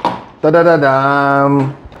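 A man's voice holding one long drawn-out vocal sound for about a second, dropping slightly in pitch near its start.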